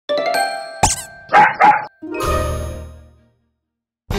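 Short intro jingle: chime tones, a quick sweep, two dog barks in quick succession, then a held chord that fades away, leaving silence for the last half second or so.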